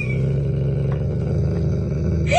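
Golden retriever growling, a low, rough, steady growl held without a break.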